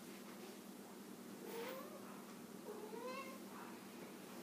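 Two faint, short rising cries over quiet room tone, the first about a second and a half in and the second about a second later.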